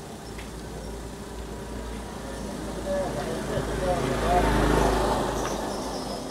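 Car running at low speed, heard from inside the cabin: a steady engine and road rumble that swells to its loudest about four to five seconds in, with faint indistinct voices partway through.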